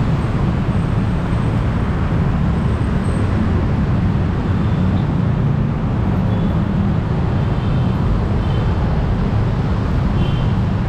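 Steady traffic noise from a busy city road, a continuous low rumble.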